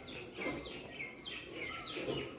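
A small bird chirping in a quick run of short, falling chirps, about four a second.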